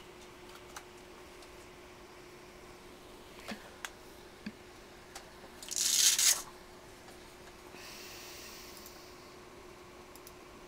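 A hand grabbing and shifting a metal desk-lamp shade on its boom arm: a few light clicks, then a brief rustling scrape about six seconds in, over quiet room tone with a faint steady hum.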